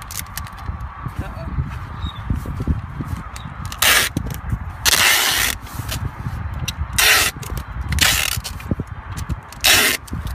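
Packing tape pulled off a handheld tape gun and pressed across a cardboard box: five rasping rips, starting about four seconds in, the second one the longest, over a low rumble.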